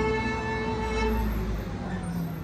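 The last note of an acoustic string-band tune (fiddle, guitar, upright bass) held and fading away after the final strum, over a steady low rumble.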